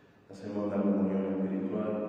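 A Catholic priest chanting part of the Mass into a microphone: a man's voice on long, held notes, starting about a third of a second in.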